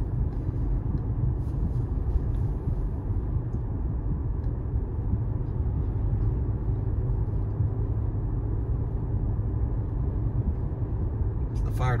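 A car's engine and tyres heard from inside while driving along a town road: a steady low rumble of road noise.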